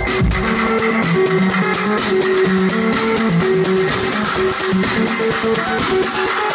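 Live electronic dance music played over a club sound system. Just after the start the kick drum drops out, leaving a plucked-sounding synthesizer melody of short stepped notes over light ticking hi-hats.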